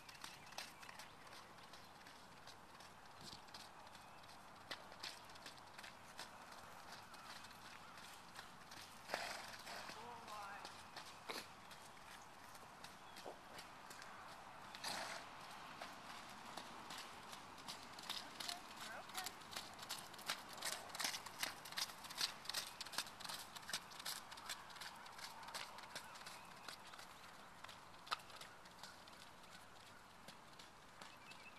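A horse's hoofbeats as it canters around an arena, a faint run of irregular strikes that grows denser and louder past the middle.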